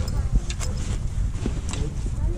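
Low rumbling handling noise on the microphone as leather jackets are moved about on a table right beside it, with a few light clicks and faint voices in the background.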